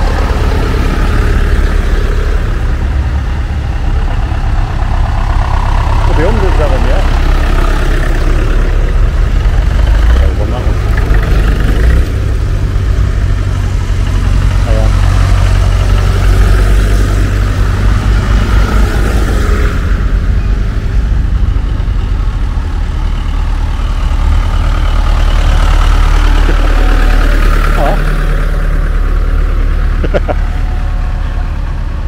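Diesel engines of vintage tractors running as a line of them drives past one after another, a steady low engine note that carries on without a break.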